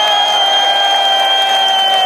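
A performer's voice through the PA holding one long, steady high note, over crowd cheering and applause.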